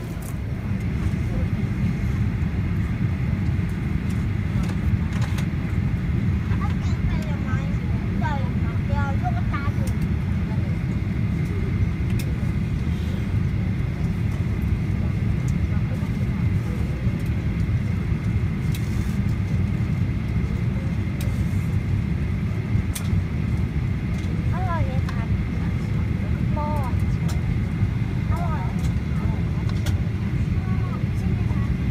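Steady low rumble of an airliner cabin while the plane stands parked at the gate, with a faint steady high whine running through it. Passengers' voices murmur faintly over it midway and again near the end.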